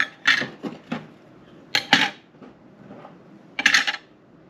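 Small tin bars clinking as they are set down on a glass-topped digital scale and knock against each other. The sharp metallic clinks come several in the first second, two close together about two seconds in, and a quick cluster near the end.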